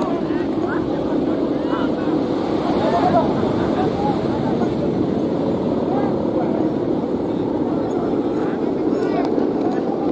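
A steady, droning hum from large Balinese kites flying overhead, the sound of their hummers in the wind, with a crowd of voices calling and shouting over it.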